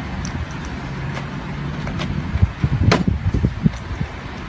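Thumps and knocks of a man handling a car tyre, over outdoor noise, with the sharpest knock about three seconds in.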